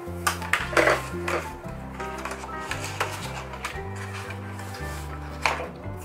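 Background music with a steady, stepping bass line, over which a few short knocks and rustles of card and a spiral-bound album being handled and slid into its cover stand out, the sharpest about a second in and again near the end.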